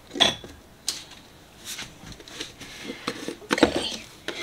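Art supplies and a container being handled and set down on a marble tabletop: a sharp knock just after the start, lighter clicks and rustles, and a short clatter near the end.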